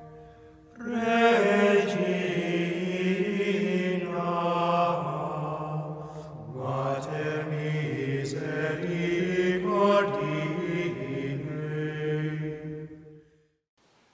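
Sung chant with long held notes in several voices, resuming about a second in after a short pause and fading out near the end.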